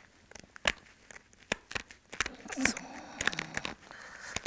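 Sharp, irregular clicks and small crackles as a short pressure flaker presses tiny flakes off the edge of a flint core, taking off the overhang left at the platform by the last blade removal.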